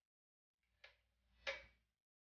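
Metal kitchen tongs clicking twice, the second click louder, as chicken pieces are lifted from a bowl back into the pan.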